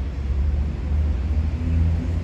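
A steady low rumble with no clear pitch change or distinct events.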